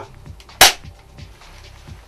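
Cybergun Colt 1911 Double Eagle spring-powered BB pistol firing a single shot: one sharp snap about half a second in.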